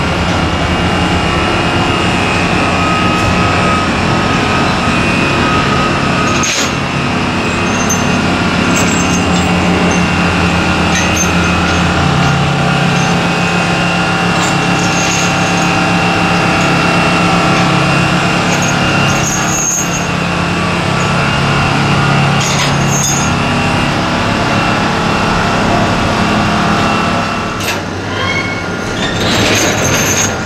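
A heavy engine running steadily, its low note shifting about twelve seconds in, with a few metallic clanks of chain being handled, more of them near the end.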